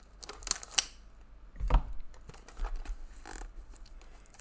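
Plastic shrink-wrap on a sealed trading-card box crackling and tearing in short, sharp crinkles as it is handled and opened, with a duller knock from the box about two seconds in.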